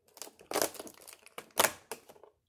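Cardboard door of an advent calendar being torn open by hand: papery tearing and crinkling in short bursts, the loudest about half a second in and again near the end.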